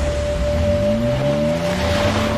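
Dramatic background music: a held high note over a steady hiss, with low tones that slide upward one after another.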